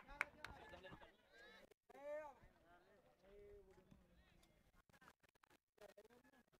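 Near silence, with faint, distant shouts of voices on the field and a couple of faint claps near the start.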